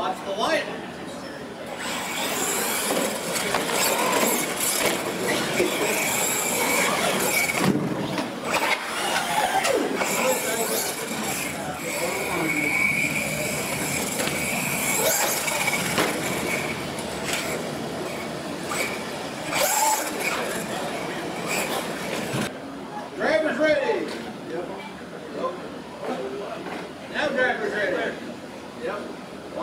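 R/C monster trucks racing over a concrete track: a steady high motor and gear whine with tyre and suspension rush. It starts about two seconds in and cuts off about twenty seconds later, with people talking in the hall throughout.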